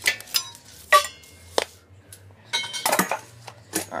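Metal parts knocking together: a string of sharp clinks and clanks, some ringing briefly, with a quick cluster of them about three seconds in.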